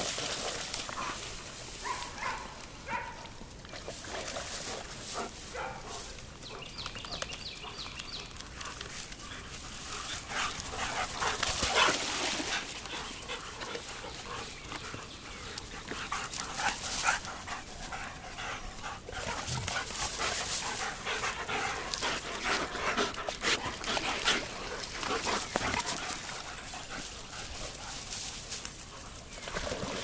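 Several German Shepherds playing, with short whines and barks among the noise of their running.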